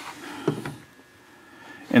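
Wooden drawer divider being pushed into place in a machinist's tool chest drawer: a soft knock about half a second in, then a fainter click just after.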